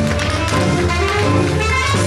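Upbeat show-tune accompaniment with brass, and the dancers' shoes striking the wooden stage floor in quick steps over it.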